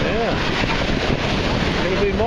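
Wind buffeting the microphone over the steady wash of surf.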